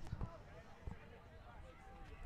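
Faint open-air sports field ambience with distant players' voices talking and calling out, and a few soft thuds in the first second.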